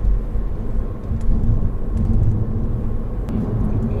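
Steady low rumble of road and engine noise heard from inside the cabin of a Honda Odyssey (RB3) minivan driving along.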